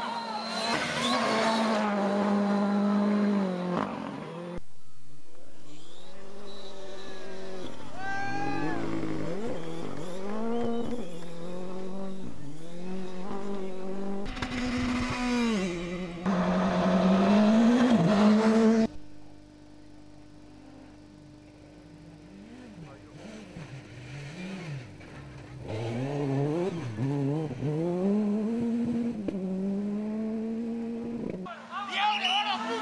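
Rally car engines revving hard as the cars pass on dirt stages, the pitch repeatedly climbing and dropping through gear changes, in a string of short clips with abrupt cuts. A quieter stretch comes about two-thirds of the way in before the engines are loud again near the end.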